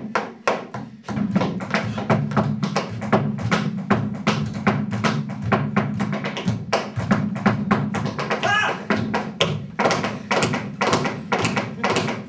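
Tap dancing: a fast, dense run of sharp taps from tap shoes on a stage floor, with a low continuous sound underneath starting about a second in.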